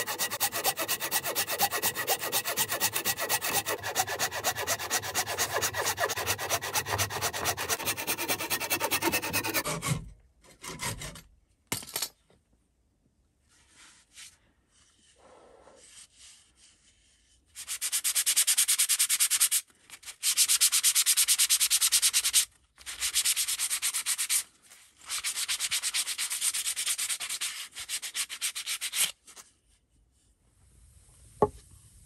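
Folding hand saw cutting through a clamped log with quick back-and-forth strokes, stopping about ten seconds in as the disc comes free. After a few quiet seconds, sandpaper rubs over the cut wooden disc in several bursts of a few seconds each.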